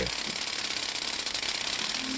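Pole-mounted electric olive-harvesting rake running in an olive tree, its oscillating tines beating through the branches with a rapid, steady clatter.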